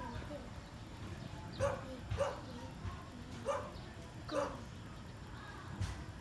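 A dog barking off-screen, four short barks spread over a few seconds, with a sharp click near the end.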